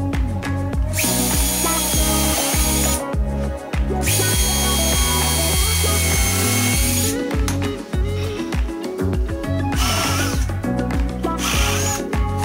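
Cordless drill running into treated 2x2 timber in four bursts, two long ones of two to three seconds, then two short ones near the end, over background music.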